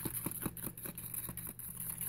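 A small utensil stirring a thick baking-soda paste in a clear plastic tub, clicking against the tub about five times a second.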